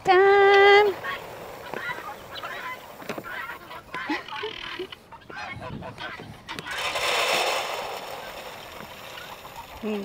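A goose in a feeding poultry flock honks once, a single held call of under a second at the start, followed by faint scattered flock sounds and a soft rush of noise around seven seconds in.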